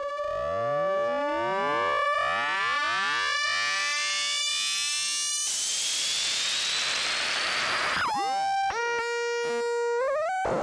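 Doepfer A-100 analog modular synthesizer playing an experimental patch: a steady drone with overtones sweeping up and down through it, repeating a little more than once a second. About halfway through it cuts abruptly to a hiss of noise with a faint whistle slowly rising in pitch, and near the end a tone falls in pitch and settles into a steady, buzzy note.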